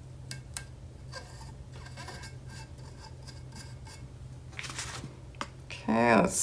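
Small clicks and rubbing as fingers press and smooth a printable-vinyl sticker onto a tumbler's cured surface, then a rustle of the paper sticker sheet being handled near the end, over a low steady hum.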